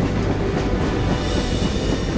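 Passenger train carriages passing close at speed: a steady rumble and clatter of wheels on rails.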